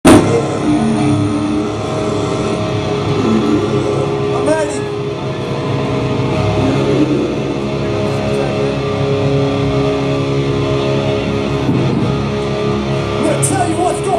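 Live rock band led by electric guitar, playing long held chords, with voices from the crowd over it.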